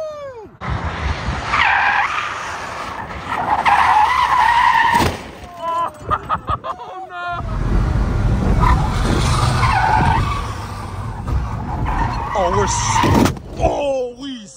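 Ford Focus skidding with its tires squealing and engine revving hard, in two long runs: the second, from about halfway, has a much deeper engine sound. Short shouts come in between and near the end.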